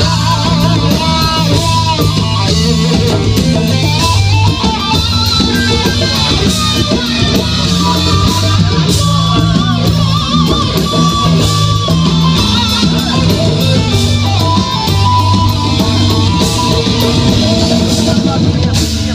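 Live rock band playing loud: electric guitars with sustained low bass notes and a drum kit with steady cymbal and drum hits, in an instrumental passage without singing.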